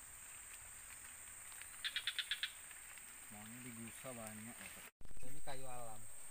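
Quiet forest background with a steady high insect drone and a quick run of about six chirps about two seconds in. A man's voice makes two short hummed sounds later, and a voice starts loudly near the end after an abrupt break.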